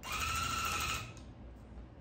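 Electric tufting gun (the Duo cut-and-loop machine, set to loop pile) running in a short test burst: a steady motor whine that lasts about a second and then stops.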